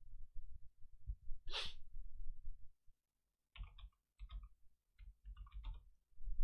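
A single audible breath about one and a half seconds in, then a run of faint short clicks between about three and a half and six seconds in, over a low background hum. The clicks come from computer input as the next stock chart is called up.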